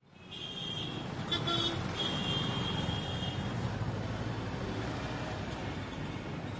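Road traffic noise fading in from silence, then a steady rumble of passing vehicles, with a few short high-pitched tones in the first three and a half seconds.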